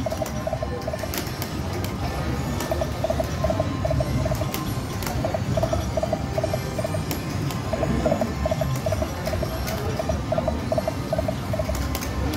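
Video slot machine's spin sounds: runs of short, repeated electronic beeps, several a second, as the reels spin and stop, over a low hum of casino background noise with scattered clicks.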